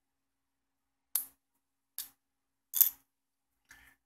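Four short, sharp clicks about a second apart, the third the loudest, from hands handling the disassembled LED bulb's plastic housing and its wires.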